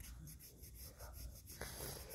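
Nail buffer block rubbed quickly back and forth across a fingernail: faint, rapid rubbing strokes, several a second.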